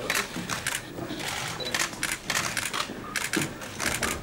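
Press photographers' DSLR camera shutters firing in rapid bursts, sharp clicks coming in quick overlapping clusters throughout.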